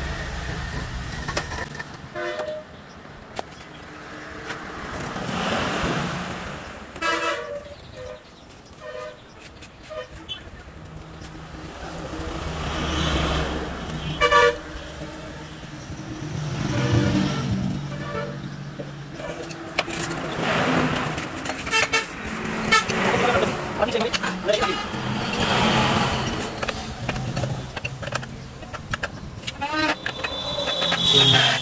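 Road traffic passing, with several short vehicle horn toots.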